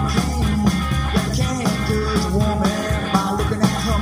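Rock and roll recording played through a loudspeaker: electric guitar bending notes over steady bass and drums.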